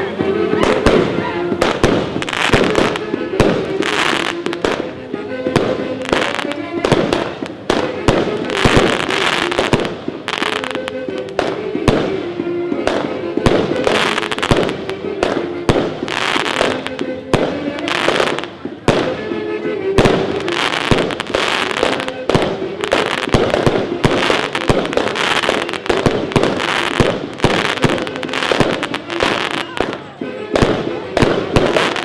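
Fireworks going off in a dense, continuous run of bangs and crackles, with music playing a melody underneath.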